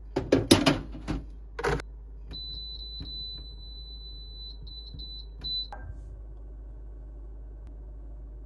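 Countertop air fryer oven being loaded and set: a ceramic dish clatters in onto the rack and the door shuts with a thud in the first two seconds. Then the touch control panel gives a high beep tone, broken by short gaps, for about three seconds as the settings are pressed, ending in a click about six seconds in, followed by a faint steady tone.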